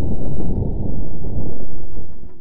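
Martian wind at about 10 to 15 mph, recorded by NASA InSight lander's air pressure sensor and sped up a hundredfold to bring it into hearing: a loud, steady, low rumbling with no tones in it.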